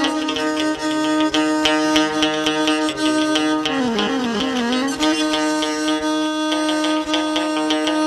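Instrumental Amazigh folk music: a violin held upright and bowed in a sustained, sliding melody, over the steady plucked strokes of a long-necked lute.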